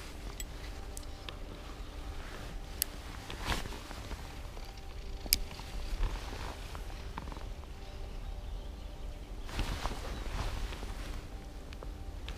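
Shimano Soare CI4 2000 spinning reel being cranked, its gears giving a soft, steady whir as a micro-jig is retrieved, with a few sharp clicks along the way. Low wind rumble on the microphone underneath.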